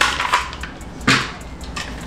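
Magazine being taken out of a Daniel Defense DDM4 V11 AR-15-style rifle: short clicks and knocks of the mag release and the magazine coming free, one at the start and another about a second in.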